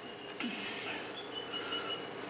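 Faint high bird chirps over quiet room tone, with a single light click about half a second in.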